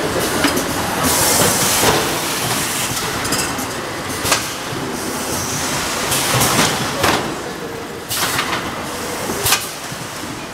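Automatic carton packing line running: machinery and conveyor clattering steadily, with short hisses of air and a few sharp knocks.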